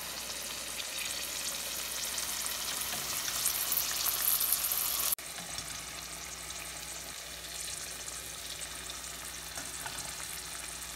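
Breaded onion rings deep-frying in hot oil in a pot, a steady crackling sizzle. It grows a little louder, then drops suddenly about halfway through and carries on quieter.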